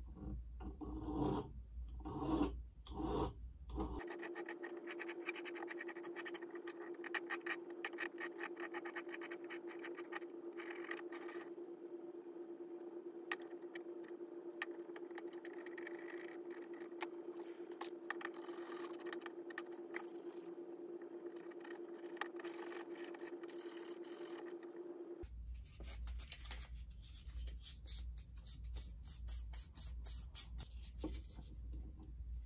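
Small silver ring being sanded by hand with an abrasive stick or file: a dry scratching of abrasive on metal. It comes as separate strokes for the first few seconds and again near the end, and as a long run of fast, dense scratching in between, with a faint steady hum beneath that middle stretch.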